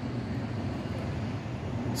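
Steady low background rumble with a faint hiss, no distinct events.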